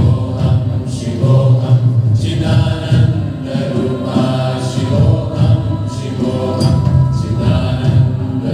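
Live meditative devotional music: several voices chanting together over sustained electronic keyboard chords with a steady low drone.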